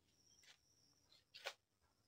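Near silence, with two faint brief clicks, about half a second and a second and a half in, and a faint steady high tone.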